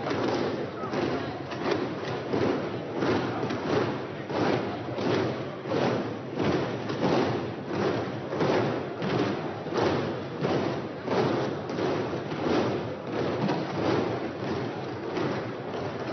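Members of parliament applauding by thumping on their wooden desks in a steady rhythm, many hands together, with voices underneath.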